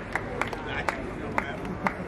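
Scattered hand claps from a small crowd, a few sharp claps about every half second as the applause thins out, over crowd chatter.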